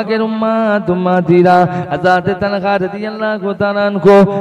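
A man's voice chanting a sermon in a melodic, sing-song delivery, with long held notes.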